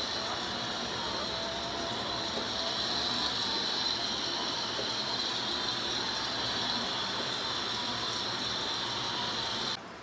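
Steady hiss, strongest in a high band, with faint steady tones beneath it; it cuts off suddenly near the end.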